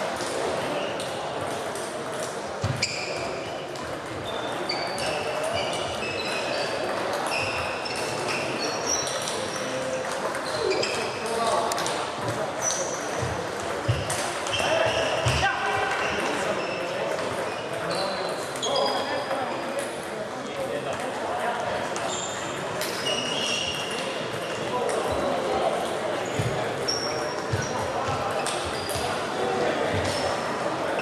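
Table tennis balls clicking off bats and tables, in quick irregular strings of short, high clicks from several tables. Voices murmur and echo in a large hall behind them.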